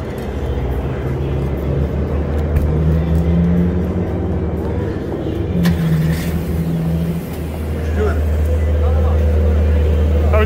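Street traffic: a steady low engine hum, with a vehicle's note rising and falling briefly twice, and indistinct voices near the end.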